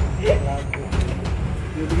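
Corrugated metal roof sheets knocking and rumbling under people climbing onto them and walking across them, over a steady low rumble, with a few scattered knocks.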